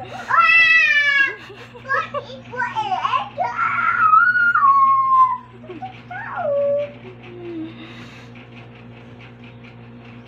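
A toddler's high-pitched vocalizing. There is a squeal near the start, a long drawn-out call midway that falls in pitch, and a shorter falling call. It dies away after about seven seconds.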